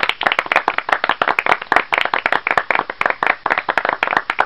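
Applause from a small group: many hand claps, distinct and overlapping, starting abruptly.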